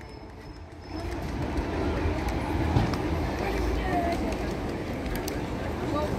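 Outdoor city background: a steady low rumble with indistinct voices, growing louder about a second in.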